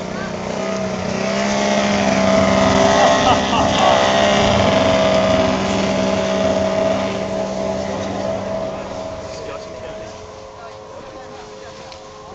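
A motor's steady hum passing close by: it grows louder over the first few seconds and fades away from about seven seconds in.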